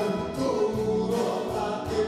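A song from a concert recording: a man singing held notes over instrumental accompaniment.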